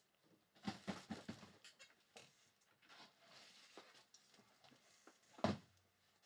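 Faint scattered clicks and knocks of someone handling things at a desk, a quick cluster about a second in and one sharper knock near the end.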